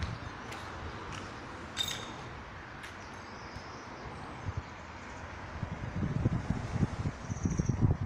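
Outdoor ambience: a steady hiss with a few faint high chirps, and irregular low buffeting on the handheld camera's microphone that grows stronger from about halfway through.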